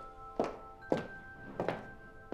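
Footsteps of hard-soled shoes on a hard floor at a steady walking pace: three distinct steps, about two a second, over sustained background music.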